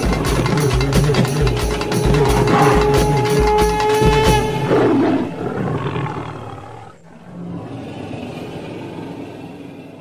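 Urumi melam folk-drum ensemble closing a piece: low drum strokes at a quick, steady beat under a long held note. The music stops about halfway through and fades out into a quiet tail.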